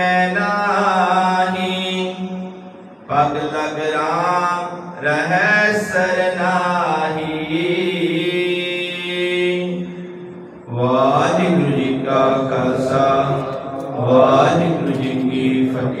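A man's voice chanting Gurbani in the slow, drawn-out melodic style of a hukamnama recitation. It comes in three long phrases, with brief breaks about three seconds in and again about ten and a half seconds in.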